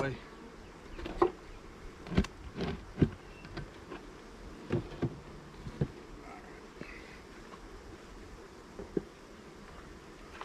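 Steady buzz of honeybees flying around the hives, with a scattering of sharp knocks and clunks in the first six seconds and one more near the end as a brick and hive tools are lifted out of a wooden hive box and set down.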